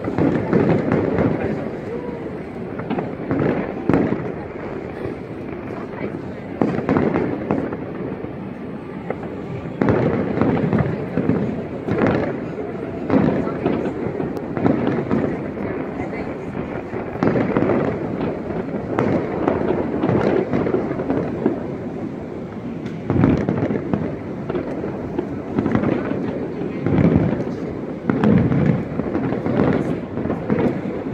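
Aerial fireworks display, an irregular, continuous run of booms and crackling bursts, with louder bangs every second or two.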